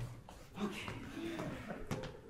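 Faint murmuring voices and small stage noises as the group quiets down after laughter, with a couple of brief low voice sounds and a soft knock near the end.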